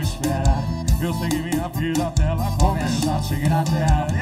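Live band music from an accordion and an acoustic guitar over a steady beat, with a melodic lead line running through.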